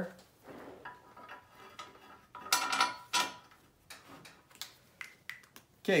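Light metallic clinks and taps of bolts and nuts being fitted to hold an intake gasket on the port flange of an aluminium intake manifold, with a busier run of clicks about two and a half to three and a half seconds in.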